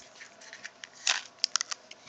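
Plastic cap of a Smarties candy tube being worked open: a series of short, sharp plastic clicks, with a brief scrape about a second in followed by several quick clicks.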